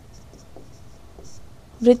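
Faint, intermittent scratching of handwriting strokes, with a single spoken word near the end.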